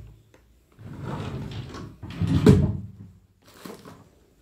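Rummaging and handling sounds: rustling and sliding, then a louder knock about two and a half seconds in, as things are moved and set down during sorting of manicure pliers.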